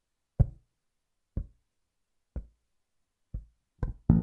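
A percussive count-in: four short knocks about a second apart, then a quicker fifth one just before the next bar.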